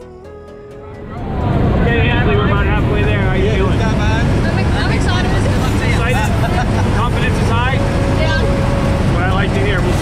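Loud, steady engine and propeller drone heard inside the cabin of a skydiving jump plane, coming in about a second in, with people's voices over it.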